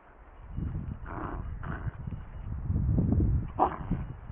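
A dog vocalizing close by: low rumbling sounds, with three short higher-pitched yelps, two a little after a second in and one near the end.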